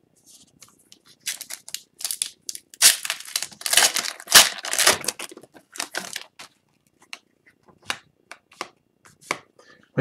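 Plastic wrapper of a hockey card pack crinkling and tearing as it is opened by hand: a run of quick rustles, loudest in the middle. Near the end this thins to light flicks as the cards are handled.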